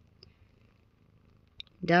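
Mother cat purring faintly and steadily as a low rumble while nursing newborn kittens, with two faint ticks. A woman's voice comes in near the end.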